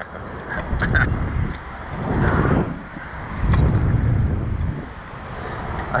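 Wind buffeting the microphone of a ride-mounted camera as a Slingshot ride capsule bounces up and down on its bungee cords, swelling and fading several times.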